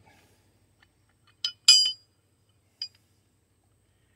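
Steel tool parts clinking as a carrier bearing puller is fitted up: two quick ringing metal clinks about a second and a half in, the second one the loudest, then a lighter clink near three seconds.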